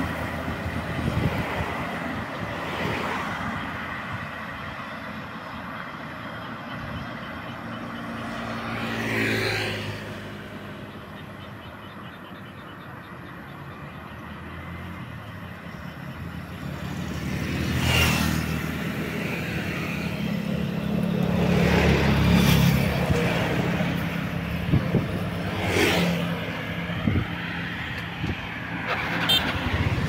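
Road traffic passing on a two-lane highway: motorcycles and a light truck go by one after another, each engine swelling and then fading, over a steady low hum of traffic. Passes come about a third of the way in, at about the middle, and twice more in the last third, the loudest a little past the middle.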